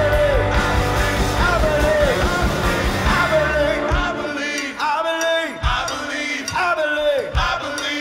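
Live rock band playing with sung vocals in short falling phrases about once a second; about halfway through, the bass and drums drop out, leaving the voices over a thin accompaniment.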